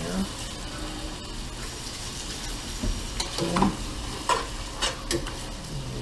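Cubed beef with bacon and onion sizzling in a pot, stirred with a big spoon that scrapes and knocks against the pot several times in the second half.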